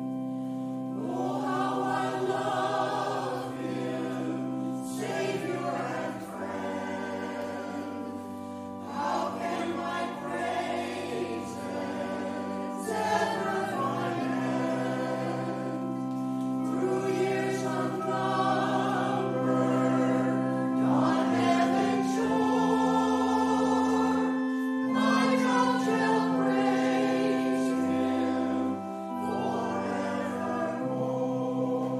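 Church choir singing with sustained accompaniment chords beneath, the voices moving in phrases a few seconds long.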